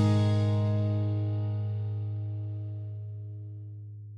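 Acoustic guitar's last strummed chord ringing out and slowly fading, with no new notes. It is plugged in, not miked, as a guide track.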